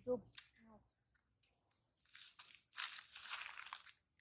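A brief high, falling call right at the start, then faint rustling and crunching of leaves, loudest over the last second or so.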